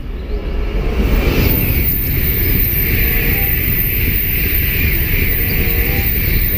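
A Shinkansen high-speed train passing close by a station platform at speed: a loud, steady rush and rumble that swells about a second in and then holds.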